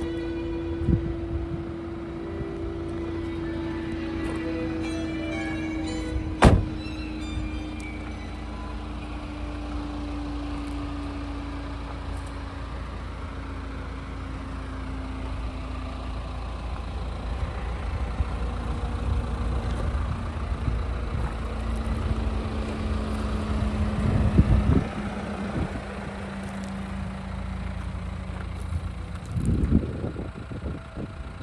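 Classical music from the car's radio through an open door, cut off by the Nissan Qashqai's door shutting with a sharp thud about six seconds in. After that there is a steady low vehicle hum with a slowly falling tone, and a couple of bumps near the end.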